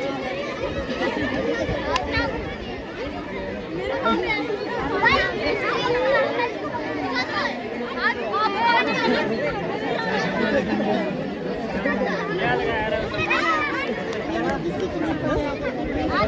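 Spectators talking at once: a steady chatter of many overlapping voices, some close and some farther off, with no music.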